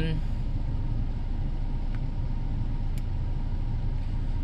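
2019 Ford Ranger's 2.3 L turbocharged four-cylinder engine idling, a steady low hum heard from inside the cab.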